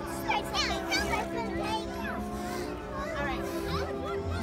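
Many young children talking and shouting excitedly at once, with music playing in the background.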